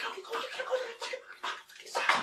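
A man making breathy, animal-like hissing and snarling noises in quick repeated bursts, about three or four a second.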